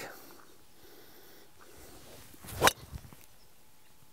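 A driver striking a golf ball off a tee: one sharp crack of impact about two and a half seconds in, the ball struck on the upswing.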